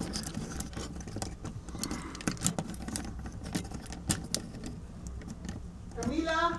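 Plastic parts of a Transformers Cybertron Soundwave figure clicking and rattling as it is handled and its joints adjusted: a string of small, irregular clicks.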